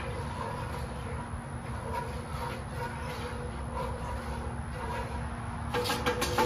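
Steady low outdoor rumble with a faint hum. Near the end a quick run of light clinks begins, like a utensil against a metal pot.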